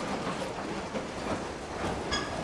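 Streetcar passing close by, its steel wheels rolling on the rails with a steady rumble and a few faint clicks.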